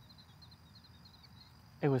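Faint, steady high-pitched chirring of insects in the background during a pause in talk, with a man's voice starting near the end.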